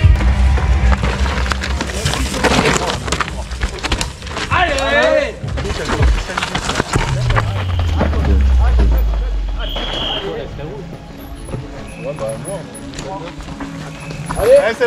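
Enduro motorcycle engine revving as a rider works over tree roots, its note falling away about halfway through, with spectators shouting now and then.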